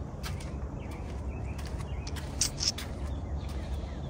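Outdoor ambience with birds chirping, including two short high chirps a little past the middle, over a steady low rumble.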